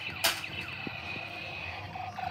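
Electronic sound effect from a toy blaster: a sharp click, then a thin, steady, high tone held for about a second and a half.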